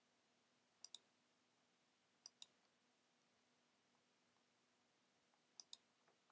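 Near silence broken by three faint double clicks, about a second in, after two and a half seconds and near the end: computer mouse clicks.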